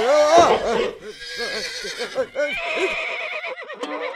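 A high, quavering whinny, its pitch swooping up and down repeatedly.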